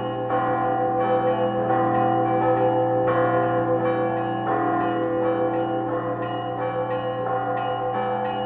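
Church bells ringing, with bells struck in quick, uneven succession about twice a second over a steady ringing hum.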